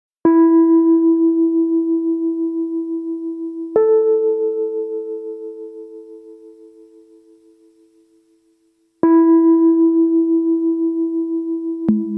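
Electronic music built on bell-like struck tones: a note sounds three times, each ringing on and fading slowly with a slight wavering, the second adding a higher note above the first. A short click and a lower note come just before the end.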